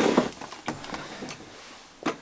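A knock at the start, then a few faint clicks and rustles as a household iron is handled to press a strip of fabric.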